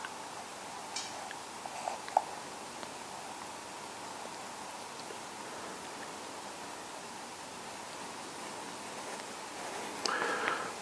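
A faint steady hiss, with a few soft scrapes and ticks in the first couple of seconds from a thin hand tool cutting the swirl slot into a leather-hard clay bowl.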